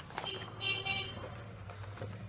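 Stiff brown pattern paper rustling as a large sheet is lifted and flipped over on a table, with a brief high-pitched tone about half a second in, over a steady low hum.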